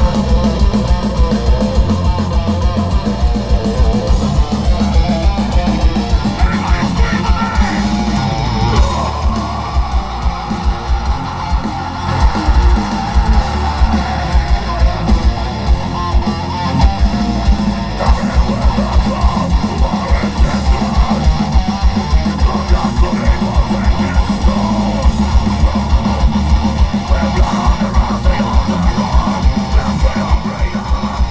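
A thrash metal band playing live and loud: distorted electric guitars and bass over fast, even kick-drum strokes.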